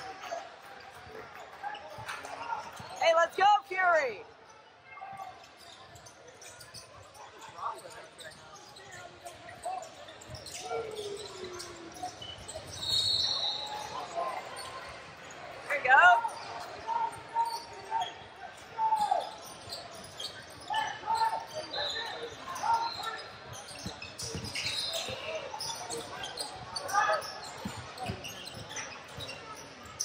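Basketballs bouncing on a hardwood gym floor during play, with people's voices calling out across a large multi-court gym; the loudest calls come about three seconds in and about halfway through.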